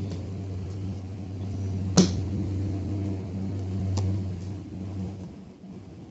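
Tarot cards being shuffled and handled by hand, with two sharp card snaps about two and four seconds in, over a steady low hum.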